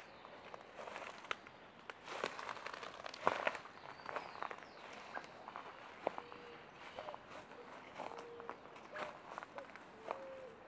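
Footsteps pushing through dry undergrowth, with twigs and dead leaves crackling and snapping underfoot in an irregular patter that is busiest between about two and four seconds in.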